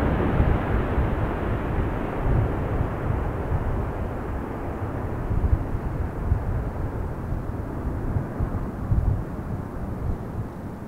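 Airbus A400M Atlas transport's four turboprop engines and eight-bladed propellers running after a low pass, the roar fading and growing duller as the aircraft flies away.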